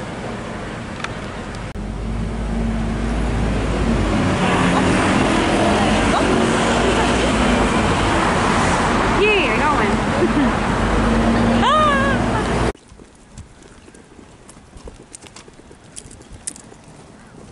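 City street traffic: a deep vehicle rumble swells from about two seconds in, under a crowd of voices with a couple of brief gliding calls. About three-quarters through it cuts off suddenly to a much quieter outdoor background with light clicks.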